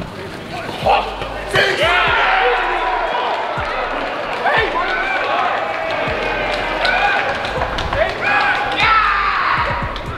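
Live on-pitch sound of a football match in a near-empty stadium: players shouting and calling to each other, with sharp thuds of the ball being kicked and little crowd noise.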